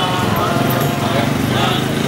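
Several people's voices sounding together, with long, steady held notes and no single clear speaker.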